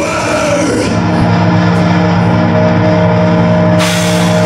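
Death metal band playing live: a distorted chord held and ringing steadily through the amplifiers, with a cymbal crash near the end as the drums come in.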